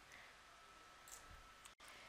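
Near silence: faint room hiss with a faint click or two about a second in, and a split-second dropout to dead silence shortly before the end.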